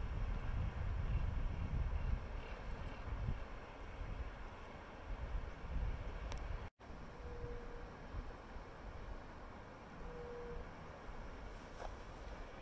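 Wind buffeting the microphone: a gusty low rumble, heavier in the first half and easing after, with the sound cutting out for an instant about two-thirds of the way through.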